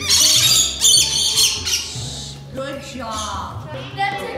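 Rainbow lorikeets screeching loudly, several harsh high calls overlapping for about the first two seconds, then fainter calls with children's voices.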